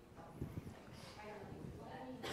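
Quiet background chatter of people in a room, with a few soft thumps of footsteps on the floor.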